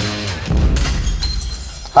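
Rock intro music ends, and about half a second in a glass-shattering sound effect hits, its high tinkling fading out over the next second.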